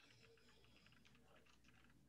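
Very faint computer keyboard typing: a run of soft key clicks, barely above room tone.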